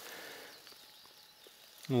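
Quiet outdoor ambience with a few faint rustles and light ticks; a man's voice begins right at the end.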